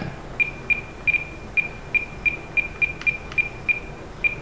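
Spektrum 9-channel DSMX transmitter beeping at each click of its scroll wheel as the telemetry sensor list is scrolled through: about a dozen short, high beeps, all at the same pitch, roughly three a second.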